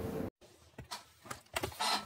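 Steady room noise with a faint hum that cuts off abruptly at an edit, followed by a few faint clicks and then a voice starting near the end.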